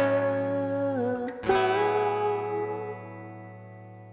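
Acoustic guitar and voice ending a song: a sung note is held over a ringing chord, then one final strum about a second and a half in is left to ring and fade away.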